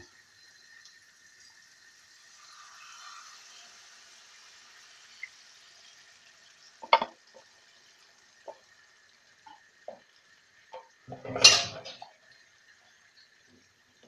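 Water mixed with coconut milk poured into a wok of frying spice paste, with a faint hiss, then scattered clinks and knocks of kitchenware and one loud clatter near the end.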